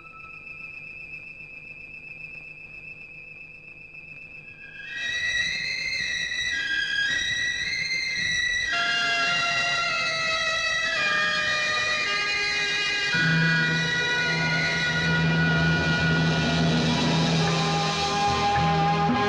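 Hindi film soundtrack music: a single high wavering note held quietly for about five seconds, then a fuller, louder instrumental melody with several instruments, joined by a steady low note about thirteen seconds in.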